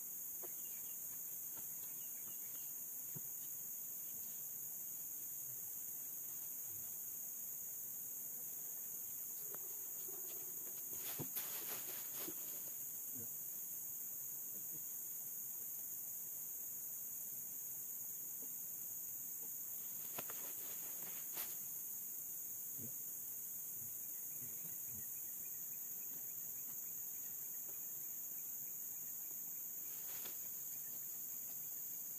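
Steady, high-pitched chorus of insects buzzing continuously, with a few brief knocks and rustles close by, twice.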